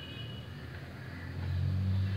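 A low, steady mechanical hum that grows louder about a second and a half in.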